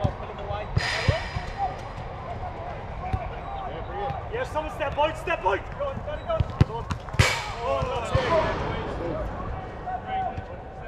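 Football being kicked on an artificial-grass pitch: a few sharp thuds, the loudest about seven seconds in, amid players' shouts and calls across the pitch.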